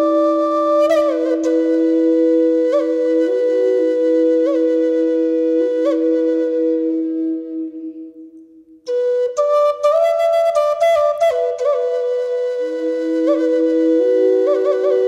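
Native American flute playing a slow melody of long held notes decorated with quick grace-note flicks, with a lower note held beneath it. The phrase fades out about eight seconds in, and after a brief pause a new phrase begins.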